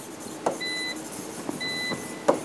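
A short electronic beep repeating about once a second, each one steady in pitch, over a few light taps and strokes of a stylus writing on a touchscreen display.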